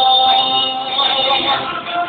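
A song with a singer and instrumental accompaniment, the notes held steady through these seconds.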